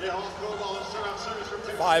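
A male commentator's voice: one long drawn-out syllable, then the word "five" near the end.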